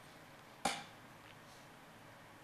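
A single short, sharp knock, like a light tap on a hard surface, just over half a second in, against quiet room tone.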